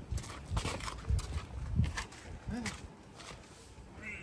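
Footsteps on brick paving, a step about every half second, with faint voices behind them.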